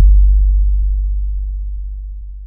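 Closing logo sound effect: a sudden deep bass hit that rings on as a low steady tone and slowly fades away.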